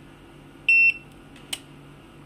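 G6D USB RFID card reader's buzzer giving one short, high beep a little under a second in, followed by a single sharp click about half a second later.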